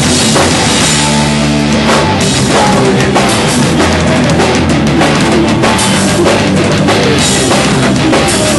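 Loud live rock band playing: electric guitars and a drum kit.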